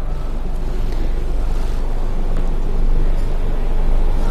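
Steady low rumble of background noise, strongest in the deep bass, with no distinct event in it.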